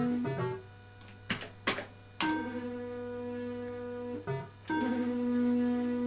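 Electrocoin Big 7 fruit machine playing its electronic tones while the reels spin: steady held notes lasting about two seconds each. A quieter gap about a second in holds two sharp clicks.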